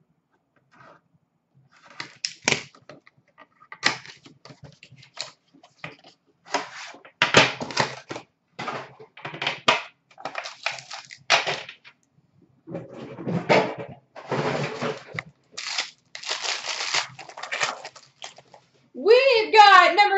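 Packaging of a hockey card box and pack being torn open and handled by hand: a long run of short rustling, tearing and crinkling noises, denser through the middle.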